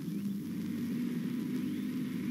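A motor vehicle's engine running steadily, fairly quiet.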